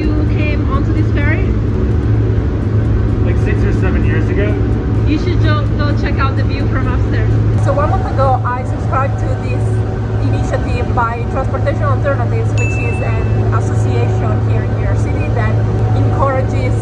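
Steady low drone of a ferry's engines and hull running under way, heard inside the passenger cabin.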